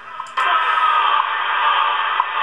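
Shortwave receiver audio from the WWV time station on 5 MHz, received in AM on an RTL-SDR. A loud hiss of static jumps up about a third of a second in, and short ticks come once a second.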